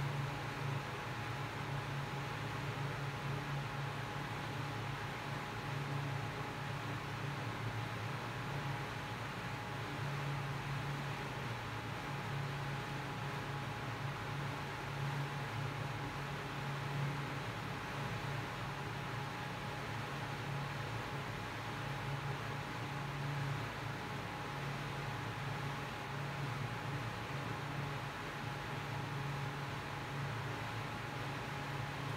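Steady background noise: an even hiss with a low hum and a thin, steady high tone, unchanging throughout with no distinct events.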